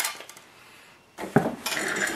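Metal paint-mixing palette clinking as it is handled. A little over a second later comes a second short clatter of small objects being handled on the workbench.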